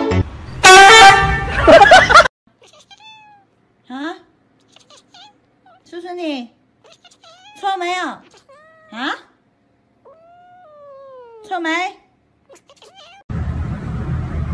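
A loud, wavering pitched cry for the first two seconds, then a kitten meowing: about six short meows that rise and fall, the last a longer one falling in pitch.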